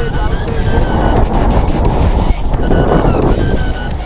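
Loud wind buffeting the microphone of a camera riding on a giant swing as it sweeps through the air.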